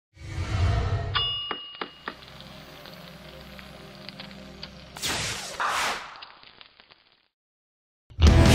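Sound-design sting for an animated logo: a whoosh, then a bright metallic ding about a second in that rings on over a low steady drone, and two more whooshes about five seconds in before it fades out.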